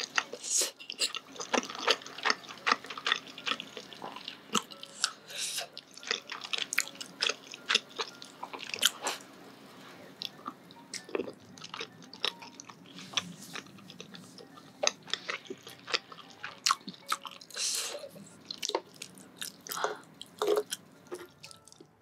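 Close-miked chewing of chewy rice-cake tteokbokki: wet, sticky mouth sounds and small clicks at an irregular pace.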